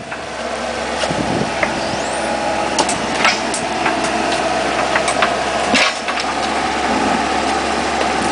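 Cat excavator's diesel engine running steadily, with a few sharp clicks and knocks scattered through the middle.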